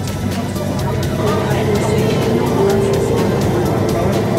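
Bangkok MRT Blue Line metro train running between stations, heard from inside the carriage: a steady low rumble with faint, regularly repeated clicks from the wheels.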